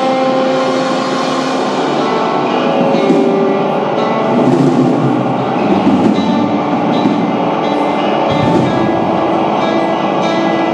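A psychedelic rock band playing live, with guitar, drums and keyboards and long held tones that shift in pitch.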